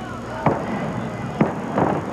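A wrestling referee's hand slapping the ring canvas twice, about a second apart, counting a pinfall to two. A brief rush of noise comes near the end as the pinned wrestler kicks out.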